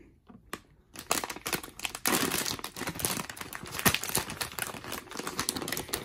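Plastic blind bag crinkling as it is opened and a plush toy is pulled out of it. The crackling starts about a second in and goes on densely after that.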